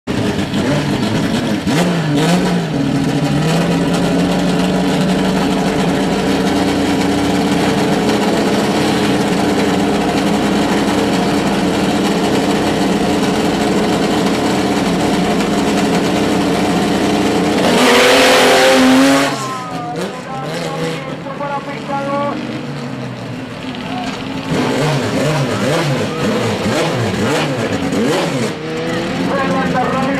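Two drag-race cars' engines idle at the start line with a few throttle blips. About 18 seconds in they launch at full throttle in a brief, loud burst, then their pitch rises through the gears as they pull away and fade.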